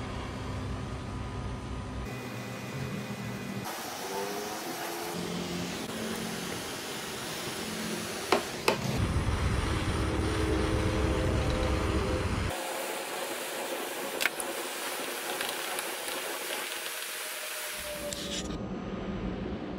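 Handheld propane torch burning with a steady rushing hiss as its flame heats the plastic kayak hull to melt in patches, the sound changing abruptly several times between stretches. A couple of sharp clicks stand out, one about eight seconds in and one near fourteen seconds.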